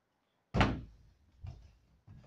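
A plastic water bottle thudding onto a wooden tabletop: one loud, sharp knock about half a second in, then a softer second knock about a second later.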